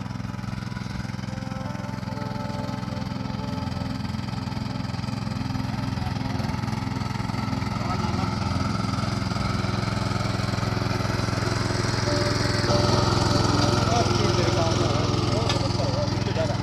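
Small single-cylinder engine of a 5.5 hp mini tiller (power weeder) running steadily under load as its tines churn through soil, growing louder about three-quarters of the way through.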